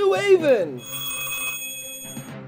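A voice breaks off, then a telephone bell rings for about a second and a half with a steady, high, buzzy tone that cuts off.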